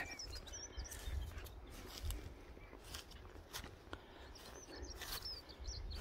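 Small birds chirping faintly outdoors, many short high chirps scattered throughout, over a low rumble with a few light clicks.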